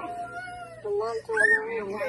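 A young child's excited, drawn-out vocalizing: a held high note through the second half, with a brief rising-and-falling squeal about one and a half seconds in.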